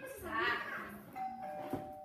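A brief voice, then about a second in a two-note chime: a higher note followed by a lower one, both held and ringing on.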